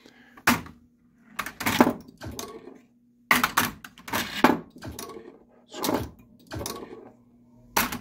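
Switch test on a Williams Whirlwind pinball machine: a dozen or so sharp thuds and knocks at uneven spacing as a freshly tweaked lane switch is triggered again and again, to check that it registers every time. A low steady hum from the machine runs underneath.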